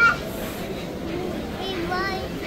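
A toddler's high-pitched voice: a short, loud call at the start and another call near the end, over a background of people's chatter.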